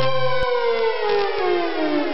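Synthesizer music: a held chord, then about half a second in the bass drops out and the tones begin a slow, smooth downward pitch glide.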